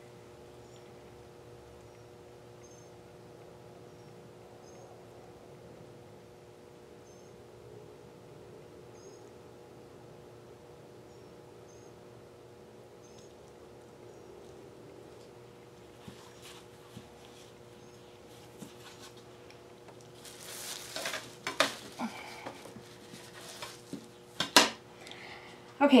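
Faint steady room hum, then light clinks and knocks from the second half on as a metal sink strainer is lifted off the wet-painted canvas and set aside, with one sharp knock near the end.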